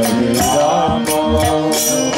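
Kirtan music: a harmonium holding chords, with a two-headed mridanga drum and kartal hand cymbals keeping a steady beat.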